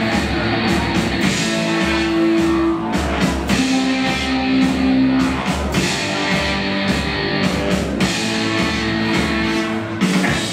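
Rock band playing live: electric guitars and drum kit with a steady beat and a repeating phrase of long held notes.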